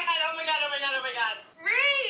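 A woman's long, high-pitched squeal of excitement, sliding slowly down in pitch, followed near the end by a shorter squeal that rises and falls.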